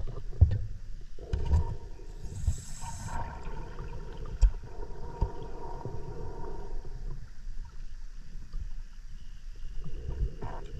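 Underwater noise picked up by a diver's camera housing: irregular low knocks and thumps over a faint steady hum, with a short hiss about two and a half seconds in.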